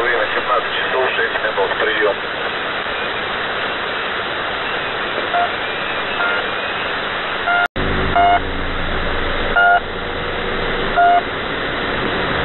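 Shortwave radio static from the Russian military station 'The Pip', received in single sideband on a web SDR, with a few faint short beeps in it. After a sudden break about eight seconds in, the station's marker pips come through plainly: three short beeps roughly a second and a half apart over the hiss.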